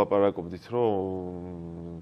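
A man's voice: a short word, then a long, drawn-out hesitation sound held for over a second, its pitch slowly falling.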